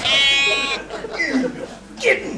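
A sheep bleats once, a loud, steady call lasting under a second.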